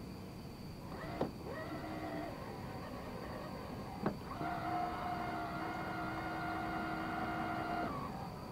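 An electric trolling motor whine that spins up after a click about a second in. It drops away, then comes on again with another click about four seconds in and runs steadily.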